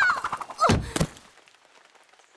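Cartoon sound effects for a whirlwind entrance: a quick falling glide, then a sharp thunk about a second in.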